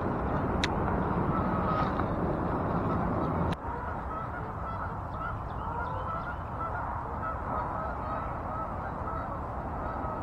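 Geese honking repeatedly, many short calls overlapping, over a steady background hiss. There is a light click about half a second in, and the background noise drops suddenly about three and a half seconds in.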